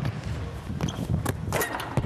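A basketball player's steps and a ball on a hardwood gym floor as he goes up for a dunk: a run of sharp knocks and thuds in the second half, the loudest at the end as he slams it through the rim.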